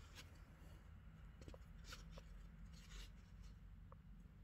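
Near silence: faint rustling and a few light scratchy ticks of a metal crochet hook pulling yarn through chain stitches, over a low steady hum.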